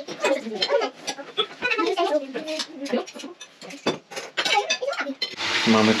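Young children's voices chattering at a meal table, with sharp clinks of forks and plates. Near the end, a kitchen tap is running into a sink.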